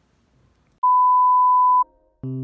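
A single steady electronic beep, one pure high tone held for about a second, starting a little under a second in and cutting off sharply.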